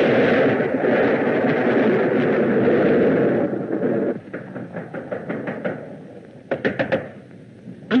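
Old black-and-white film soundtrack played back: a loud, noisy stretch for about the first three and a half seconds, then rapid knocking on a door in two bursts, the second shortly before the end.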